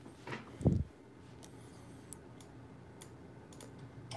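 Scattered clicks of a laptop keyboard being typed on, with one short dull thump about half a second in, the loudest sound.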